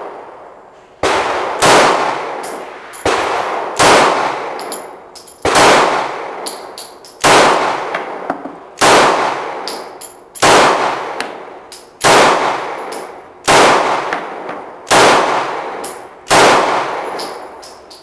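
Glock 26 subcompact 9mm pistol firing a slow string of about ten shots, roughly one every second and a half. Each shot is followed by a long echo.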